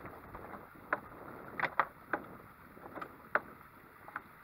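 Several sharp, irregularly spaced knocks and taps on a boat, two close together about a second and a half in, over a low wash of water and wind.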